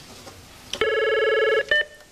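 Electronic telephone or intercom buzzer: a click, then a steady buzzing tone lasting under a second, followed by a short, higher beep.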